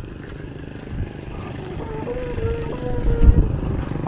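Motorbike engine running, growing steadily louder, with wind buffeting the microphone.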